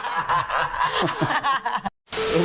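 Several people laughing and chuckling together, cut off suddenly near the end.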